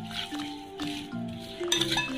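Background music with a simple melody of held notes, over a few light clinks of a metal spoon against a glass bowl as lemon pieces and salt are stirred, more of them near the end.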